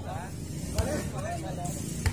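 Voices of several people calling out and talking across an outdoor volleyball court, with one sharp smack about a second in.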